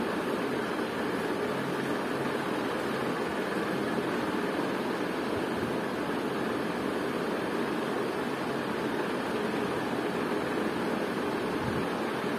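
Steady background hiss with a faint low hum, unchanging throughout, with no distinct events.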